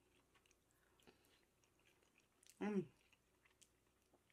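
Faint chewing and wet mouth clicks of someone eating a mouthful of soft grits, with one short hummed "mm" about two and a half seconds in.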